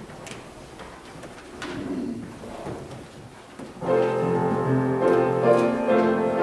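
Quiet rustling of a congregation getting to its feet, then about four seconds in a keyboard instrument starts the introduction to a hymn with full, sustained chords.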